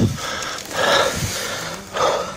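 Heavy, hurried breathing close to the phone's microphone, a loud breath-like hiss about a second in, with low thumps from handling. Faint distant voices can be heard near the end.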